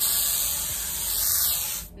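Glade aerosol air freshener sprayed in one continuous hiss of about two seconds, starting abruptly and cutting off just before the end.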